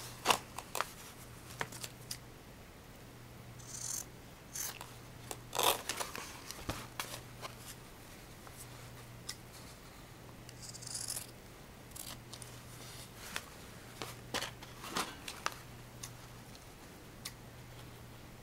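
Scissors snipping through canvas fabric to trim the corners of a fabric-covered board: irregular short snips and clicks, with a few brief rustles as the fabric and board are handled.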